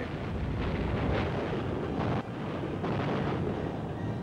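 Artillery shell bursts on an old newsreel sound track: a continuous rumble of explosions, with louder blasts about one and two seconds in.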